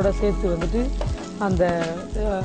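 Shallots and chopped vegetables sizzling in hot oil in a frying pan while being stirred with a wooden spatula.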